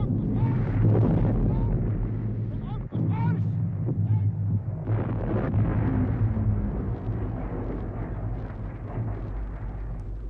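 Battle sound effects of an artillery bombardment: a continuous low rumble, with men shouting over it a couple of times in the first few seconds.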